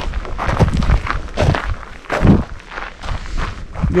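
Footsteps of a person walking close to the microphone, about two steps a second.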